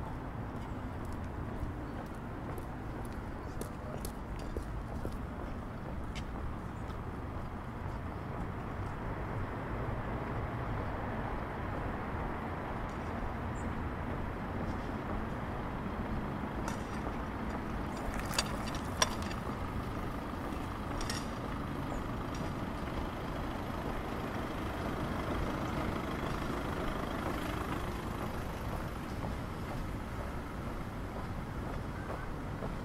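Steady outdoor city ambience: a constant rumble of road traffic in the distance. Two sharp clicks stand out about two-thirds of the way through.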